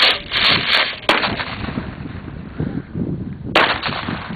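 Firework rocket strapped to a model tank going off: a loud burst at ignition followed by about a second of crackling pops and hiss. The hissing carries on more quietly, and another sharp bang comes a little before the end.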